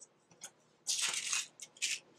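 Paper and cardboard craft cutouts being handled, rustling and scraping in a few short bursts, the longest starting about a second in.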